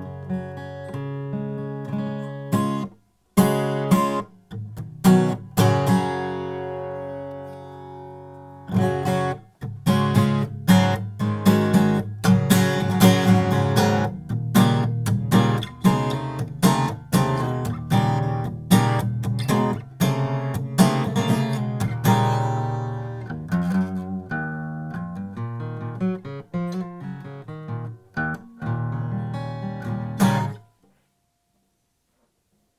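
Stagg SA35 cutaway steel-string acoustic guitar played solo, mixing strummed chords and picked notes. There are brief breaks about three seconds in and about nine seconds in, and one chord is left ringing to die away before the playing picks up again.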